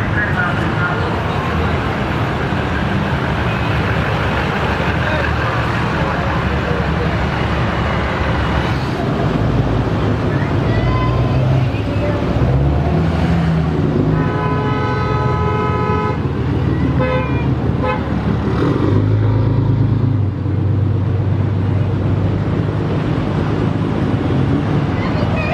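Vehicles driving slowly past with their engines rumbling, and a car horn held in one long blast of about two seconds near the middle, followed by a few shorter honks; the engine rumble swells near the end as a larger vehicle passes.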